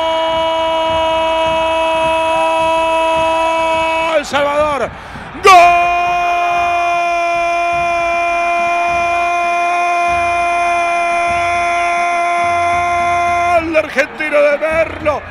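A football commentator's drawn-out goal call, a shouted 'goool' held on one steady note for about four seconds, broken briefly, then held again for about eight seconds until just before the end.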